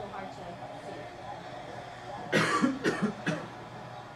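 A person coughs in a short run of three or four quick coughs, starting a little past halfway, over a low murmur of room sound.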